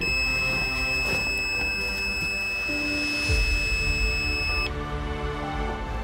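Fox Mini Micron X electronic carp bite alarm sounding its bite-indication tone: one steady high-pitched tone lasting about four and a half seconds, then cutting off suddenly.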